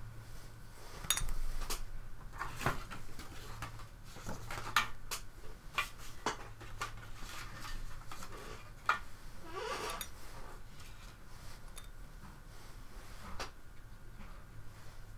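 Light clinks and taps of brushes against a ceramic watercolour palette as paint is picked up and mixed, scattered irregularly, with a short rising squeak about ten seconds in.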